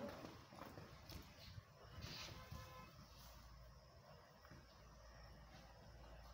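Faint, irregular hoofbeats of a horse moving over soft sandy ground.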